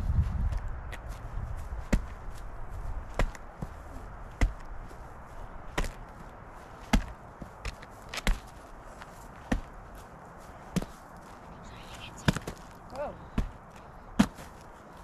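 Repeated sharp cracks and knocks, about one every second or so, of hands chopping at and breaking apart a rotting tree stump.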